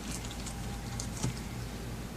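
Steady low room hum with a few faint, light clicks from gloved hands handling a small piece of cut fibre wound dressing.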